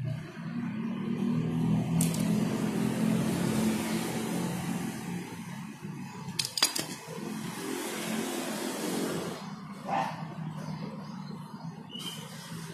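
A motor vehicle engine running nearby, swelling over the first two seconds and easing off about nine and a half seconds in. A few sharp clicks come around six and a half seconds in.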